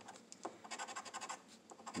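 Large metal coin scratching the coating off a lottery scratch-off ticket, a faint run of quick short strokes.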